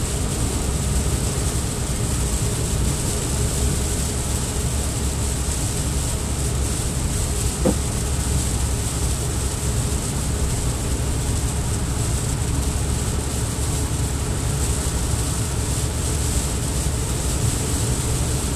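Steady road noise inside the cabin of a car travelling at about 45 mph on a wet, slushy road: a low rumble under a hiss that sounds like rain.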